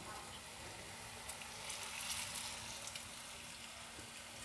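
Pieces of kochu (taro) shallow-frying in oil in a non-stick frying pan over a very low flame: a faint, steady sizzle with a few light crackles.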